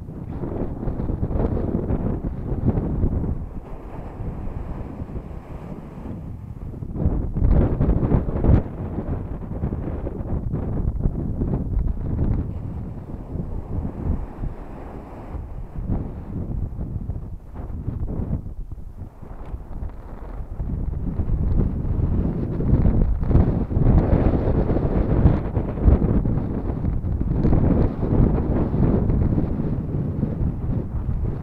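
Wind buffeting the microphone in uneven gusts, louder through the second half, with surf washing up on the beach underneath.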